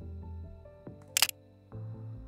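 Sony ZV-E10 camera shutter firing once, a sharp quick double click about a second in, taking the portrait. Soft background music plays throughout.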